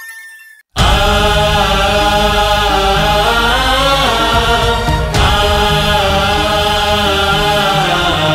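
A short electronic logo jingle fades out to a moment of silence. About a second in, a patriotic song starts abruptly: male voices singing long held notes together over a full backing arrangement.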